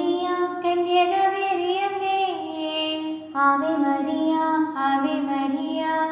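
A high voice singing a Malayalam hymn to the Virgin Mary in long, held notes, with a brief break about three seconds in.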